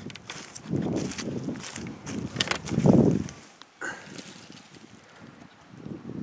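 Dry grass and dead leaves crunching and rustling in several bursts, the loudest about three seconds in.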